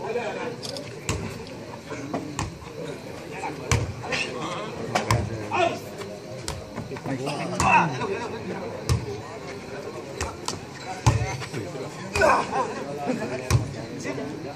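Footvolley ball being kicked and headed back and forth in a rally: a series of sharp thuds about a second or so apart. A crowd talks and shouts throughout.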